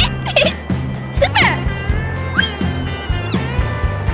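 Cartoon background music with a steady beat. Over it, a cartoon kitten's voice gives two short squeaky gliding yelps, then one long high call of about a second that drops away at the end.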